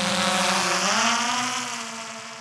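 DJI quadcopter drone's propellers buzzing in flight. The pitch rises about a second in as the drone speeds up, then the sound fades as it flies away.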